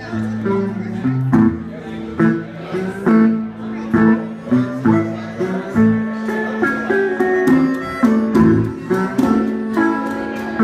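Live blues band playing an instrumental passage: harmonica with held notes over guitar, bass guitar and a hand drum keeping a steady beat.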